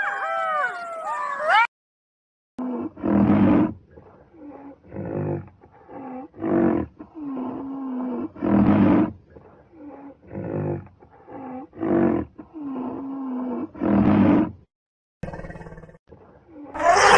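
Red fox calling with short yelps that fall in pitch. After a brief gap, a large animal gives a long series of deep, rough calls, a loud one every second or two with softer ones between.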